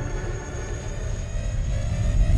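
Background music: a steady held chord over a deep low rumble.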